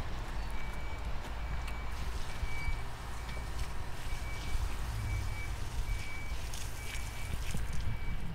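Outdoor ambience: a steady low rumble with a faint, short high beep repeating at an even pace, a little faster than once a second.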